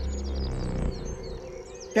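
Birds chirping in the background of a film soundtrack, with a low droning note that fades out about a second in.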